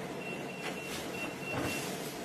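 Digital door lock keypad beeping as a passcode is entered: a quick run of about seven short beeps, all at the same pitch.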